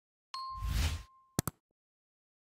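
End-screen animation sound effects: a bell-like ding held for about a second with a whoosh over it, then two quick clicks like a mouse clicking a subscribe bell.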